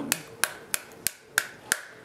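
Wooden spoon whacking the skin of a halved pomegranate held cut side down over a stainless steel bowl, knocking the seeds loose. Sharp, steady knocks, about three a second.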